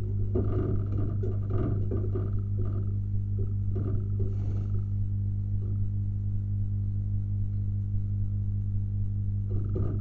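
Pigeons cooing in short low calls through roughly the first five seconds, with another call just before the end, over a steady low electrical hum.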